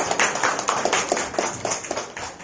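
A seated audience of children clapping together: dense, irregular claps that thin out slightly toward the end.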